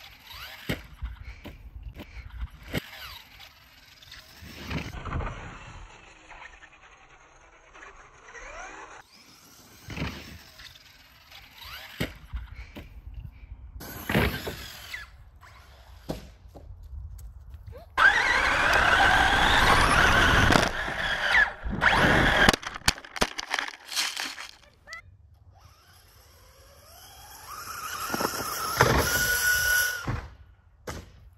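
Traxxas 4x4 VXL RC truck's brushless electric motor whining in bursts as it is driven and jumped, loudest for about three seconds past the middle, with the pitch sweeping up as it accelerates, and sharp knocks as the truck lands and tumbles.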